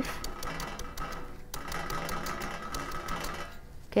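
Kitchen knife cutting through a raw banana flower: a run of quick, fairly even clicks and crunches as the blade works through the tightly packed layers, over a faint steady hum.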